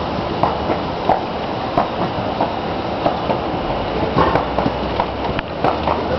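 Horse-drawn carriage rolling along a paved street: a steady rattling rumble from the wheels and carriage, with regular knocks of the horse's hooves about every two-thirds of a second.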